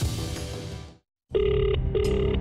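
Channel ident music fading out, a brief cut to silence, then a telephone ringing: one double ring, two short bursts of the same electronic tone with a short gap between them.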